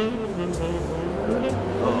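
City street traffic at an intersection, cars running past, with background music of held low notes playing under it.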